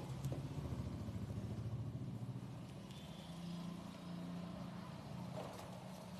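A motor vehicle engine running at low revs, pulsing fast at first and then steadier, with a couple of sharp knife taps on a wooden chopping block at the start.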